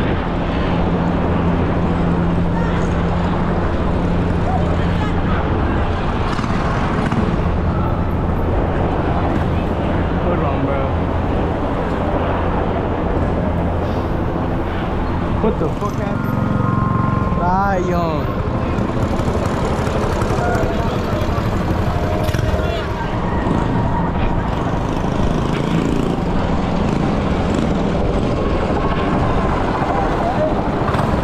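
Busy street noise around a large group bike ride: indistinct voices of the crowd mixed with running vehicle engines and traffic, with a steady low engine hum in the first few seconds. About 17 seconds in, a short warbling tone rises and falls a few times.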